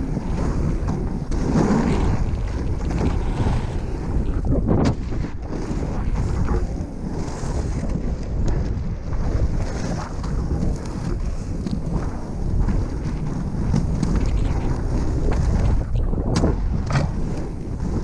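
Inline skate wheels (110 mm triskate wheels) rolling over asphalt in a continuous low rumble, with wind buffeting the microphone. There are a few sharp clicks, one about five seconds in and two near the end.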